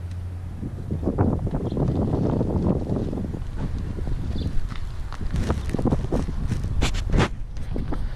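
Wind rumbling on the microphone, with a few sharp knocks in the second half.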